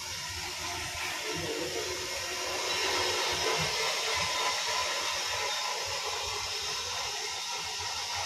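Steady rushing hiss that grows a little louder about two and a half seconds in.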